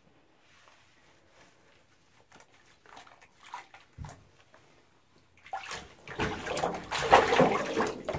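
Shallow bathwater sloshing and splashing in a bathtub around a Great Dane puppy being washed by hand. Faint small splashes at first with a dull thump about four seconds in, then louder, busier splashing from about five and a half seconds in as the puppy moves about in the tub.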